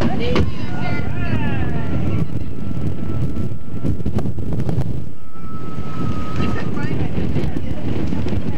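Wind buffeting a camcorder microphone in a steady low rumble, with children's voices in the background and a thin, steady high tone that holds for a few seconds, twice.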